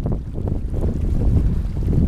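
Wind buffeting the microphone in uneven gusts over the rush of water along the hull of a small sailboat under sail.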